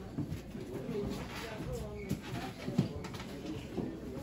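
Indistinct background voices of other people in a shop, with low sliding pitched sounds and a few light clicks.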